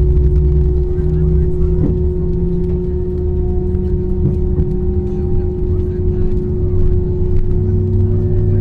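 Jet airliner cabin during taxi: a steady engine and air-system hum with a constant low tone over a low rumble.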